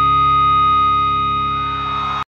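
Recorded rock music: a final held chord on distorted electric guitar ringing on steadily, easing off a little about a second in.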